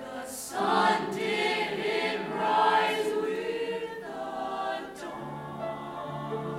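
High school jazz choir singing a cappella in close harmony. The singing swells louder about half a second in, then eases back to a soft held chord, with a lower note joining near the end.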